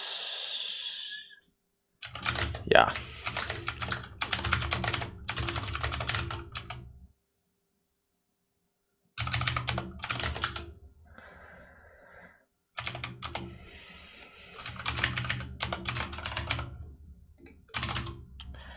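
Typing on a computer keyboard: quick bursts of key clicks, stopping for about two seconds in the middle before carrying on.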